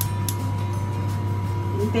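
A steady low hum with a couple of faint clicks as a gas hob's burner knob is turned on.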